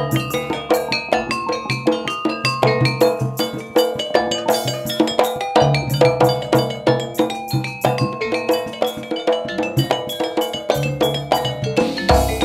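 East Javanese gamelan playing: rows of bonang kettle gongs struck in quick, even strokes that ring on, with low beats underneath.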